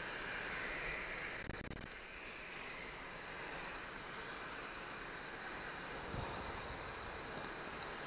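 Steady, fairly quiet outdoor background noise with wind on the microphone, a brief patter of handling clicks about a second and a half in, and a soft thump near the end.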